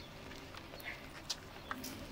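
Footsteps on a concrete sidewalk: a few faint, uneven taps of shoes over a quiet outdoor background.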